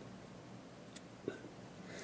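A quiet pause: faint room tone with a small click about a second in and a brief soft sound just after.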